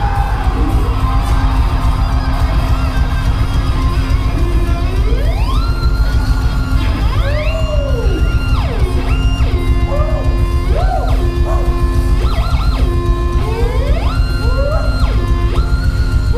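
A live heavy rock band playing loud through a club PA, with electric guitar. From about four seconds in, high sustained guitar notes slide up, hold and slide back down several times over a dense low rumble of bass and drums.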